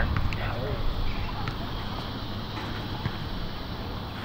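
Steady low outdoor background rumble with a few faint, scattered ticks.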